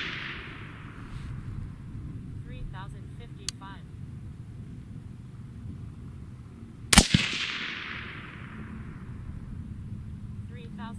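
A suppressed AR-15 in .223 fires a single shot about seven seconds in, with a sharp report and an echo fading over about a second. The fading echo of the previous shot is heard at the start. The shots are part of a five-shot group of 53-grain V-Max handloads.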